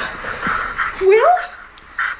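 A woman crying into a telephone: ragged, breathy gasps, then about a second in a whimpering wail that rises and falls in pitch.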